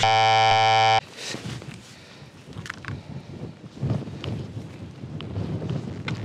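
A loud, harsh one-second buzzer tone that cuts off abruptly, then rustling, knocking and handling noise as the fallen camera is picked up off the grass.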